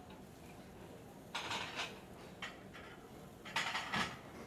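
Short scuffing and rustling noises from someone moving about with a handheld camera: a cluster about a second and a half in, two softer ones, then another near the end, over a faint steady room hum.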